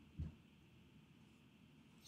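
Near silence: room tone, with one short, soft low thump about a fifth of a second in.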